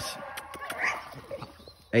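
An eight-month-old game-bred male dog giving short whines and yips, with a few sharp clicks among them.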